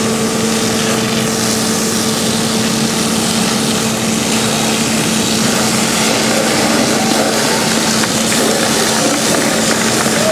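A fire engine's pump engine running at a steady pitch, under a constant rushing hiss of water from hose jets.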